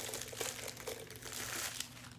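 Clear plastic wrapping crinkling as it is handled and pulled off a small wax warmer, in an irregular run of rustles.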